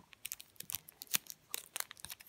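Paper wrapper of a roll of Fizzers sweets crinkling and tearing as it is handled and opened: a run of sharp, irregular crackles.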